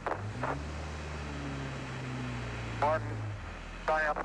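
A 1993 Ford Aerostar's V6 engine idling, a steady low hum that stops shortly before the end, with brief fragments of a man's voice over it.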